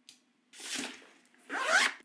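A luggage zipper pulled in two quick strokes of about half a second each, the second rising in pitch as it runs, after a short click at the start.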